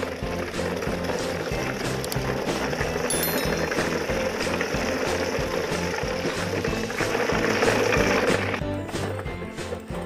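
Background music with a steady beat, over the gritty rolling rattle of a convoy of plastic toy dump trucks being towed on plastic wheels along a gravelly dirt track.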